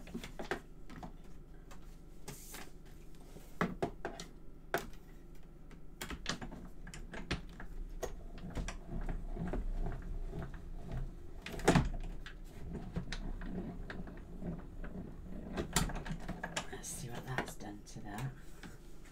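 Irregular clicks and knocks of plastic cutting plates and an embossing folder being handled and run through a hand-cranked Big Shot die-cutting machine, with one sharp knock a little past the middle.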